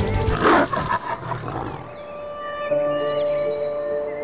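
A loud beast's roar about half a second in, lasting under a second, over background music that plays throughout.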